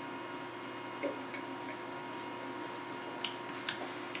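A quiet sip of beer with a soft swallow about a second in, then faint, scattered tongue and lip clicks from tasting, over a steady room hum.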